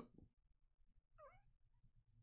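Near silence, with one faint, brief squeak that dips and rises in pitch a little over a second in.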